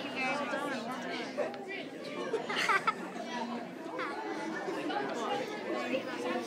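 Indistinct chatter of several overlapping voices with laughter, and a brief louder, higher-pitched outburst about two and a half seconds in.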